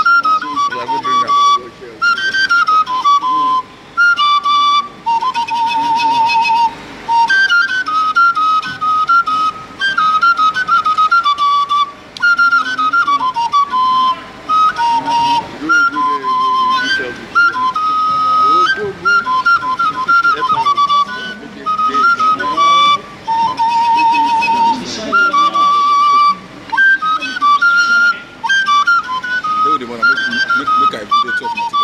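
Igbo oja, a small wooden end-blown flute, playing a quick melody of short high notes broken by brief pauses for breath. Twice, a lower note is held with a fast warble.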